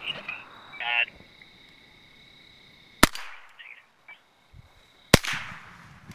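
Two .22 rimfire rifle shots from a Ruger 10/22, about two seconds apart, each a sharp crack that trails off in echo.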